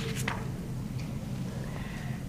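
Room tone in a pause of a lecture: a steady low hum, with a few short clicks just as it begins and a faint thin squeak near the end.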